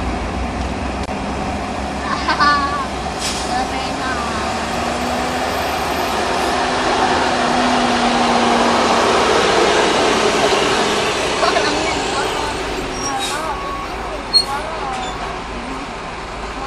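Heavy diesel vehicles crawling in a traffic jam: the bus just ahead and the tanker truck alongside run close by. Their noise swells to its loudest around the middle and then eases off.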